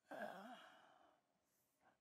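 A person's sigh, voiced and wavering slightly in pitch, lasting about a second, followed by a faint short breath near the end.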